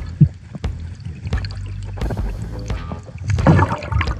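Underwater sound of gravel and small rocks clicking and knocking as a gloved hand digs through a bedrock crack, over a low rumble of river current. Background music plays underneath.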